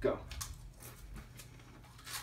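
Saltine crackers being bitten and chewed: a run of faint, dry crunching clicks, several a second.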